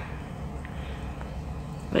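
Steady low rumble of outdoor background noise, with no distinct sound events.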